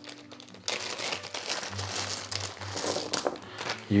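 A thin plastic bag crinkling as it is pulled open and handled, then a handful of plastic game dice tipped out of it, clicking together as they spill.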